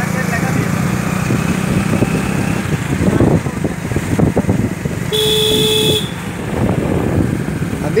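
Motorcycle engine running, with a steady hum in the first few seconds that turns rougher. A horn honks once for about a second, just past the middle.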